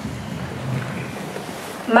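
Hall room noise: a low, even rumble with faint, indistinct murmuring and no clear words, before a woman's voice starts speaking at the very end.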